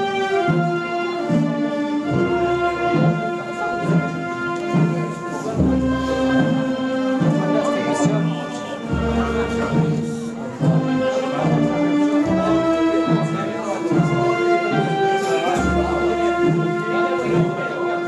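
Brass band playing a slow funeral march: long held notes over a steady low beat, with murmuring voices under it.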